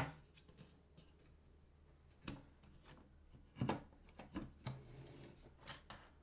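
Wooden parts of a tabletop easel clicking and knocking as it is handled and adjusted: one sharp click at the start, then a few quieter, scattered knocks.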